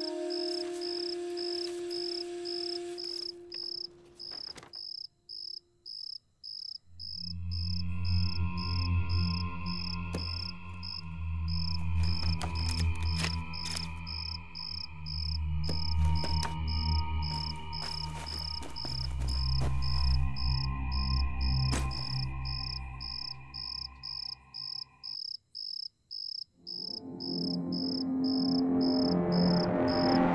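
Crickets chirping in a steady, even pulse, under a film's background music: a few held notes at the start, then a low sustained drone with higher held tones swelling in about seven seconds in, cutting out a few seconds before the end and rising again near the end.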